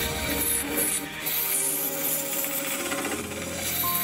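Steady rubbing scrape of work on a resin-and-root blank spinning on a wood lathe, heard over background music.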